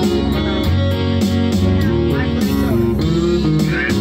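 Karaoke backing track of a slow country love song playing an instrumental passage led by guitar, with no singing over it.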